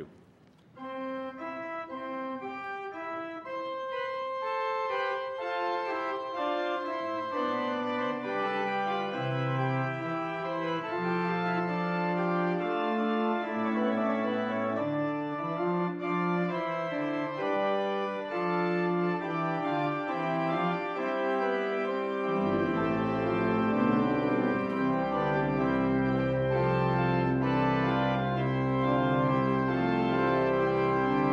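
Church organ playing a hymn tune in sustained chords that start about a second in and grow fuller, with deep bass pedal notes coming in about two-thirds of the way through.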